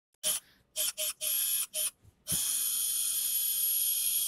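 Surgical power driver drilling a 2.4 mm guide pin through the fibular head. It gives a few short bursts of high-pitched whine, then runs steadily from about halfway in.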